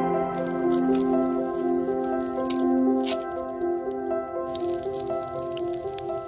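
Soft instrumental background music with long held notes, over the drips and splashes of water poured from a small kettle into a cup. A faint crackling hiss comes in near the end.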